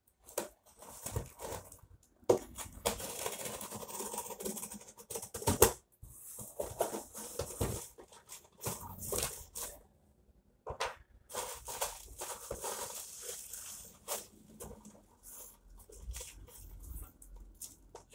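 Packing tape being cut and torn off a cardboard box, then the flaps opened and bubble wrap and old paper handled: irregular tearing, rustling and crinkling with a few sharp clicks.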